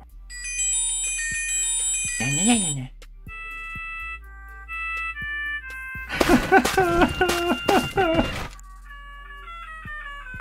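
Alarm tones previewed one after another on a SOYES 7S+ credit-card-sized mobile phone, tinny electronic melodies from its small speaker. A high chiming tune comes first, then a run of stepped beeping notes, a louder, fuller tune, and a descending run of notes near the end.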